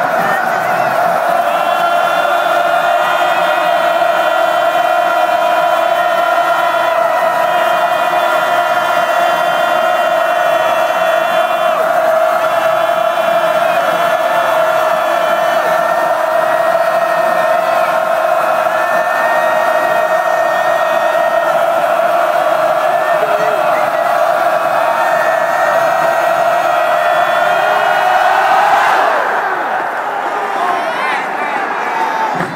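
Packed stadium crowd holding one long, loud roar, swelling slightly and then dropping off just before the end.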